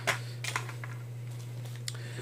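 A few faint clicks and taps of small kit items being handled, a metal tin and a plastic survival card, over a steady low electrical hum.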